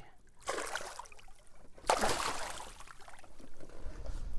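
Water splashing in a landing net as a muskellunge thrashes and a hand reaches in to grab it: a short splash about half a second in, then a longer, louder one about two seconds in.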